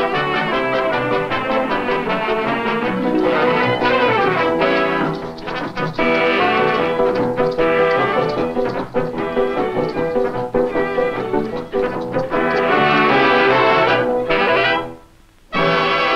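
A cabaret dance band playing a lively brass-led number, with trumpets and trombones to the fore. The music stops short for a moment near the end, then starts up again.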